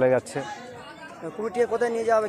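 Speech only: a man talking, with a short pause from about half a second in before he goes on.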